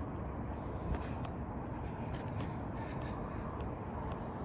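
Steady low rumble of outdoor road noise beside a road, with a few faint scattered ticks.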